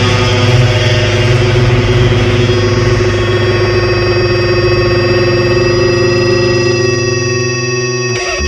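Distorted electric guitar chord held and ringing out as the song's final chord, with steady high-pitched tones coming in about three seconds in.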